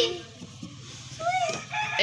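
A rooster crowing faintly in the distance in the last half second or so, over a low steady hum.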